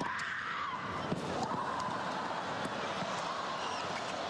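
Courtside sound of a tennis match: a steady crowd din with a wavering, voice-like tone running through it and a few sharp knocks.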